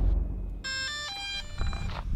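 A short electronic chime: a quick run of stepped beeping notes at changing pitches, lasting a little over a second and starting about half a second in.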